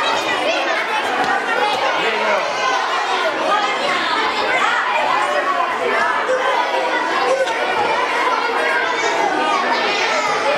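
A hall full of children chattering at once, a steady din of many overlapping voices.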